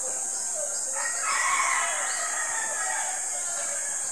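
A single drawn-out animal call, about two seconds long, starting about a second in and loudest at its start, over a steady high-pitched hiss.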